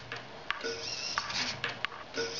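Hobby servo on an Arduino-automated gyro wheel toy whining briefly once as it tilts the wheel's track, with a few sharp clicks and ticks from the mechanism.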